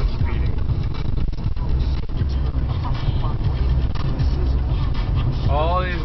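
Steady low rumble of a car driving on the road. A man's voice starts near the end.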